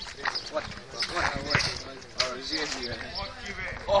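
Players shouting across an outdoor court, with the repeated thuds of a football being kicked and bouncing on asphalt, and running footsteps.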